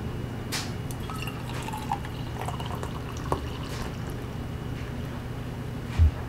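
Coffee poured from a glass carafe into a stainless steel mug: a steady stream of liquid filling the mug, over a low steady hum.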